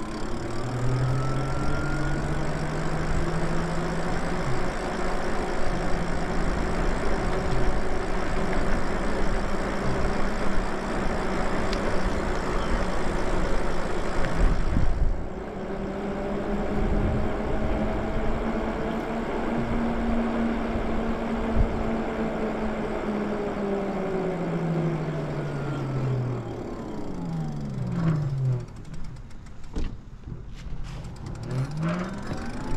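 Lyric Graffiti electric bike under way: a motor and tyre whine that climbs in pitch as it speeds up, holds while cruising, and drops as it slows near the end, over steady road and wind noise.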